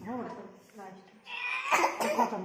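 Short bits of voice, then a cough about one and a half seconds in.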